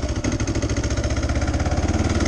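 Motorcycle engine running at low speed on a wet dirt lane, with a steady, evenly pulsing exhaust note.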